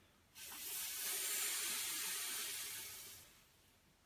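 A man's long, controlled exhalation through the mouth on the effort phase of a Pilates corkscrew leg circle: a steady hiss of breath that starts a moment in, lasts about three seconds and fades away.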